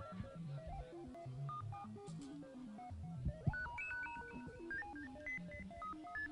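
Electric guitar played quietly through an amp: single picked notes in a loose, wandering line, short clear tones stepping up and down in pitch, getting busier about halfway through.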